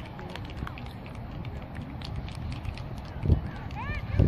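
Distant voices of players and spectators talking and calling across an open soccer field, with a short, dull low thump about three seconds in.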